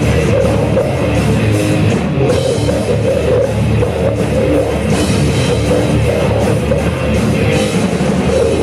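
Death-thrash metal band playing live at full volume: drum kit pounding under electric guitars, one dense, unbroken wall of sound through a club PA.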